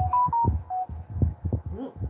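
A person chewing a mouthful of food close to the microphone: a run of low, dull, irregular thuds. A hummed 'mm' of enjoyment starts at the very end.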